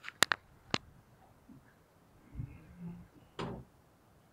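Three sharp clicks in the first second, then a few faint, soft knocks and a short bump near the end: small handling sounds.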